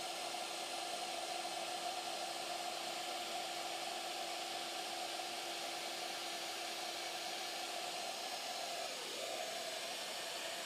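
Shaper Origin handheld CNC router spindle running steadily with a whine over a hiss during an automatic plunge to full depth into a wood corner. Near the end the lower tone stops and the whine briefly drops in pitch, then recovers.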